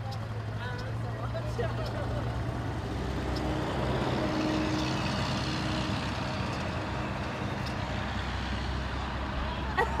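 Road traffic passing: a truck goes by, its noise swelling over a few seconds in the middle and then fading, over a steady low hum, with faint voices early on.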